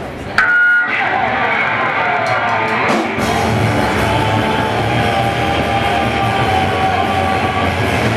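Black metal band starting a song live: an electric guitar comes in suddenly under half a second in, with a short high ringing tone, and the full band with drums and bass joins about three seconds in and plays on loudly.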